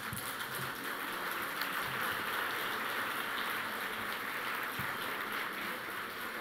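Audience applauding, a steady patter of many hands clapping that starts abruptly as the speaker finishes.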